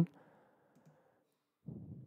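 Near silence, then a single faint computer mouse click near the end.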